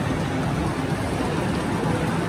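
Steady, reverberant crowd and event noise filling a large indoor mall atrium, with no single sound standing out.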